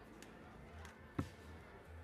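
A single dart striking a Winmau Blade 6 bristle dartboard, one short sharp thud about a second in: the dart that lands in double 10 to check out.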